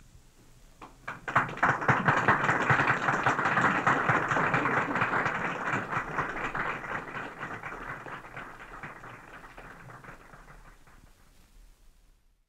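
Audience applause: a few scattered claps about a second in, swelling quickly into full clapping that then slowly dies away.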